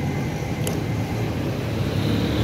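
Steady low rumble of road traffic, with a single short click a little after half a second in.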